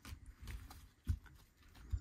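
2022 Panini Contenders football cards being sorted by hand and laid down on a pile: a few soft taps and slides, the loudest a low thump about a second in.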